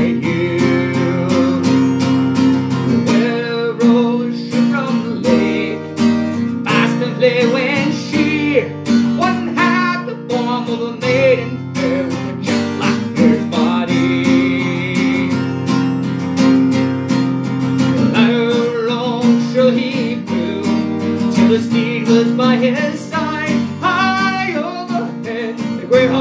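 Acoustic guitar strummed steadily under a harmonica playing the melody with wavering held notes: an instrumental break in a folk ballad.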